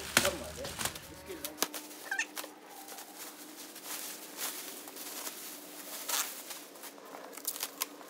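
Clear plastic stretch wrap crinkling and crackling in irregular bursts as it is pulled off a pallet of fertilizer bags and bunched up by gloved hands. A short high rising squeak comes about two seconds in.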